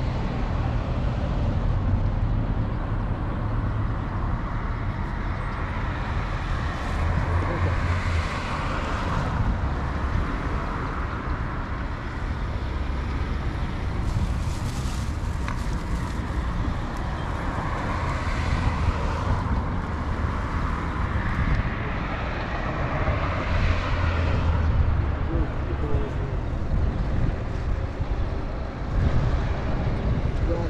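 Road traffic on a nearby street: a steady low rumble from passing cars that swells and fades several times.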